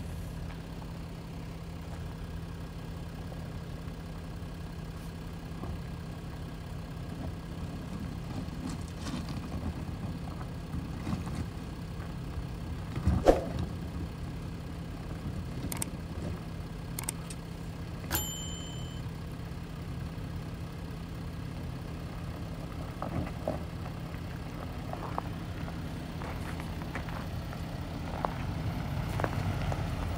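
Range Rover Sport creeping slowly downhill on a loose rocky trail under hill descent control, its engine a steady low hum at little more than idle, with gravel crunching and ticking under the tyres. A sharp knock sounds about thirteen seconds in, and the vehicle grows louder near the end as it draws close.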